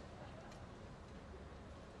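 Quiet badminton-hall background noise, low and steady, with one faint click about a quarter of the way in.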